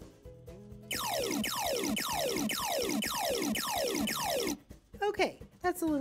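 micro:bit simulator playing a looped square-wave sound effect, a tone sweeping steeply down from a high pitch to a low one, repeated every half second seven times over a low looping beat. It is a little intense and stops suddenly about four and a half seconds in.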